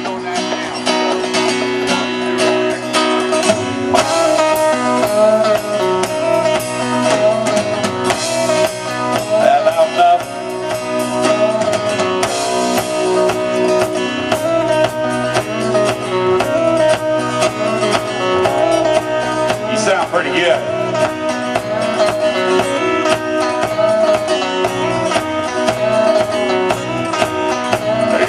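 Live country band playing the instrumental intro of a song: electric and acoustic guitars, bass and drum kit, amplified through outdoor PA speakers. The playing gets fuller and a little louder about four seconds in.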